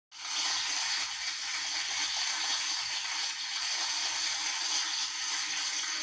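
A steady rushing hiss, like static or running water, starting just after the opening.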